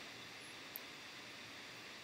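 Faint steady hiss of room tone and microphone noise, with a tiny click about three-quarters of a second in.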